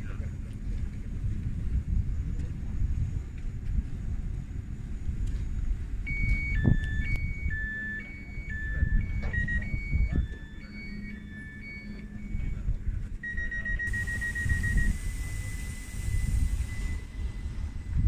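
Electronic signal tones from a Stadler Citylink tram-train standing at the platform. About six seconds in, a run of beeps alternating between a higher and a lower pitch begins; near the end it gives way to a fast-pulsed beep and then a held tone, with a hiss of air partway through. A low rumble runs underneath.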